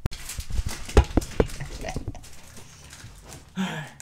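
Handling noise right at the microphone: a run of irregular knocks and rustles as a hand and a pillow brush against the camera, followed near the end by a short breathy laugh.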